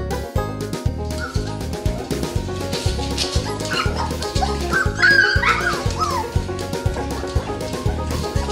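A dog yipping and whining in short high calls that rise and fall, loudest about five seconds in, over background music with a steady beat.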